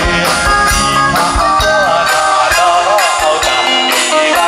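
A live band playing, with drum kit, keyboard and electric guitar, and a man singing into a microphone over it with a wavering, held melody line.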